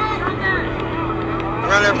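Players' and spectators' voices on a lacrosse field: shouting and calling over general crowd chatter, with a louder shout near the end.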